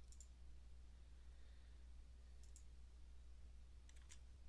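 Near silence with a steady low hum, broken by a few faint computer mouse clicks: one just after the start and a pair about two and a half seconds in.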